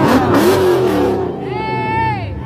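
Dodge Scat Pack's 6.4-litre HEMI V8 revving hard, running on plastoline, a fuel made from plastic. A harsh rush of noise comes with the rev in the first second, and a high held tone sounds near the end.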